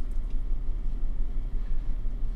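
Steady low rumble inside a car's cabin while the car sits stopped with the engine idling.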